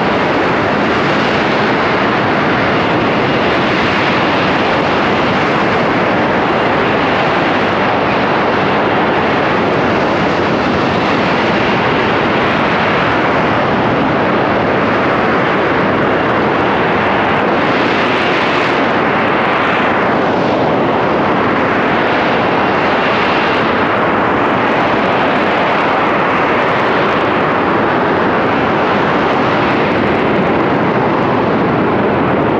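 Harrier GR7 jump jet hovering, its Rolls-Royce Pegasus vectored-thrust turbofan making a loud, steady jet noise with a faint high whine through it. About two-thirds of the way in the tone sweeps and phases as the jet shifts position.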